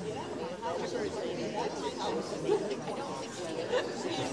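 Indistinct chatter of several people talking at once in a large indoor hall.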